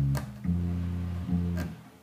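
Electric bass guitar played unaccompanied: a few low plucked notes of the opening phrase of a bass line, starting on B-flat, one note held for most of a second, the phrase stopping near the end.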